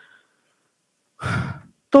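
About a second of near silence, then a man's audible breath, heard close on a podium microphone, followed by the first spoken word near the end.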